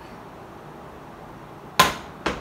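A single sharp clank of a kitchen utensil striking cookware, with a brief ringing tone, near the end.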